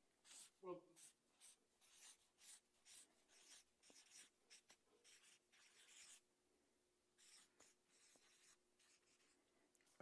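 Marker pen writing on a paper flip-chart pad: a faint run of short, irregular strokes for about six seconds, then a few more after a pause.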